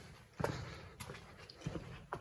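Footsteps on a hard floor, several uneven steps with the loudest about half a second in.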